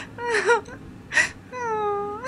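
A man crying: short wavering sobs broken by sharp gasping breaths in, then one long drawn-out wail near the end.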